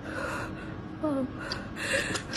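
A woman crying: gasping, sobbing breaths, with a short falling whimper about a second in.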